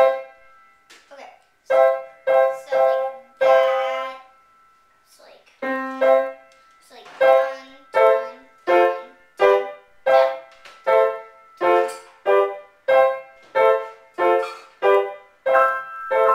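Grand piano played by hand, notes and chords struck one at a time, each left to ring and fade. A few slow strikes and a short pause come first, then an even run of chords about two a second.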